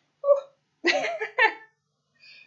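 A woman laughing briefly, in three short bursts.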